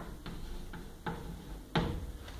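Chalk tapping and scratching on a chalkboard as terms are written: about five short, sharp taps, the loudest near the end.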